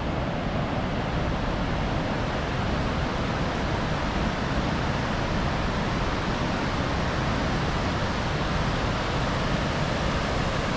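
Steady rush of river water pouring over a low weir and churning through the whitewater below it.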